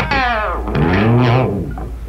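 Electric guitar, a Fender Telecaster with a Floyd Rose locking tremolo, played loud through an amp, with the whammy bar bending the pitch: the held notes dive down, then a low note swoops up and back down about a second in and fades out near the end.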